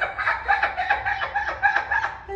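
A woman laughing in a quick, even run of high-pitched laughs, about six a second.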